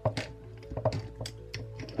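A string of irregular small clicks and knocks as a key is worked against the flange nut on an angle grinder's spindle to loosen it, over steady background music.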